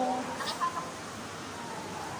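A woman's wordless, whiny vocal sound, like a fake whimper, falling in pitch and fading in the first moment, followed by a faint click about half a second in.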